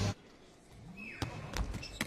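A volleyball being struck hard twice in a large arena, a bit over a second in, the two sharp hits about a third of a second apart.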